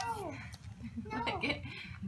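Soft, wordless voice sounds: a vocal sound falling in pitch and trailing off at the start, then quiet murmuring around the middle.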